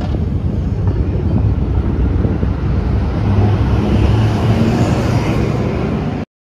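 Outdoor street ambience: a steady low rumble of traffic-like noise.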